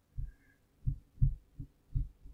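A few low, muffled thumps at uneven intervals, about five in two seconds.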